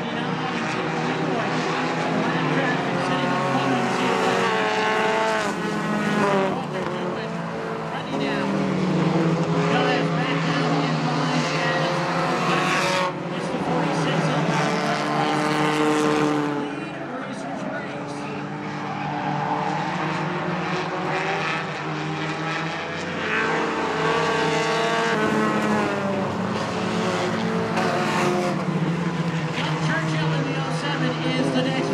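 Engines of compact stock cars racing on a short oval, several cars at once, the pitch rising and falling in waves every few seconds as they accelerate and lift through the turns and pass by.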